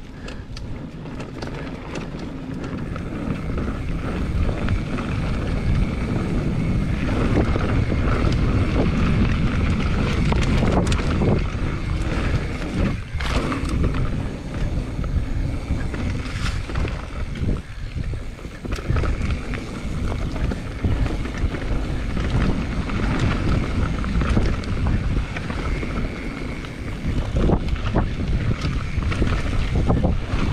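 Wind buffeting an action camera's microphone over the rumble and rattle of a mountain bike descending a dirt trail at speed, with frequent knocks from the bike hitting bumps. It builds over the first few seconds, then stays loud.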